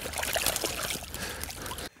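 Water sloshing and trickling with small splashes as a keepnet is tipped at the edge of a lake and its catch of roach and ide slides back into the water. The sound cuts off suddenly near the end.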